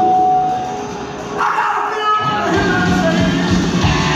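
Live punk rock band playing loud through a PA. The sound thins out and dips about a second in, then the drums and bass crash back in strongly a little past halfway.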